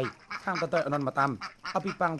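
A man's voice-over narration continuing.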